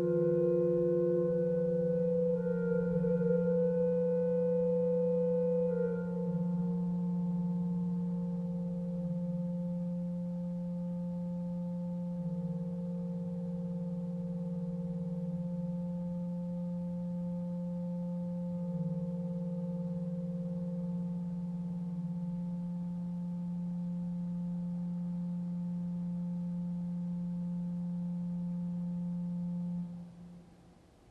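Pipe organ holding sustained chords over a steady low note, the upper notes changing slowly. The chord thins and gets quieter about six seconds in, and the notes are released right at the end.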